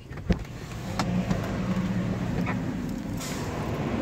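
A car engine running with a steady low hum, heard from inside the car, that swells about a second in. A single sharp click comes just before it.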